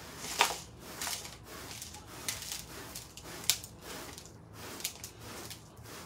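Debris being swept and scraped into a plastic dustpan on carpet: a series of short scratchy strokes, one or two a second, with a few sharper clicks of grit and bits landing in the pan.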